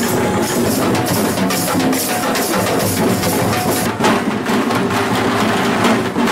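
A group of folk drummers playing double-headed barrel drums together in a fast, dense rhythm. About four seconds in the drumming changes as a second drum troupe takes over.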